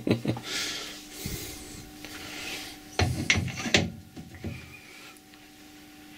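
A homemade steel ball-turning tool being handled and fitted onto a metal lathe's carriage. Metal scrapes against metal, and there is a cluster of clunks about three seconds in.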